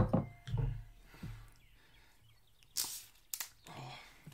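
A thump at the start, then about three seconds in a beer can is cracked open: a short sharp hiss followed by a couple of clicks.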